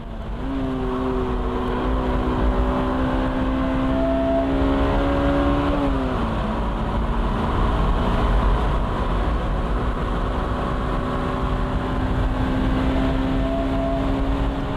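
Honda SSM prototype roadster's engine pulling hard at high revs, its note climbing slowly, then dropping sharply at an upshift about six seconds in and pulling again. Wind rushes over the open cockpit.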